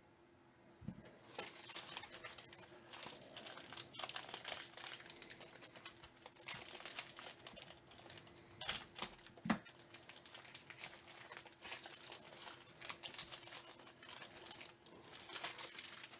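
The plastic-foil wrapper of a Bowman Draft Super Jumbo card pack crinkles on and off as it is torn open and the stack of cards is pulled out. There are two sharper snaps about nine seconds in.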